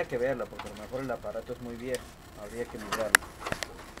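Pigeons cooing: a string of low, repeated coos that bend up and down in pitch, with a single sharp click about three seconds in.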